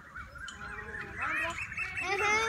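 Birds calling outdoors, with voices mixed in; the calls grow denser and louder in the second second.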